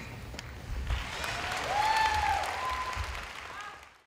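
Audience applauding, with a few voices calling out cheers over the clapping; it fades out at the very end.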